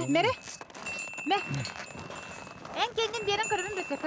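Short spoken exclamations from people, with a thin, high, steady ringing tone from a small bell heard twice, in the middle and again near the end.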